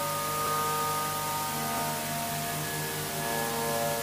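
A harmonium holding one steady chord of several notes, a sustained drone under the pause in the kirtan, with a slight wavering in its lowest note about halfway through.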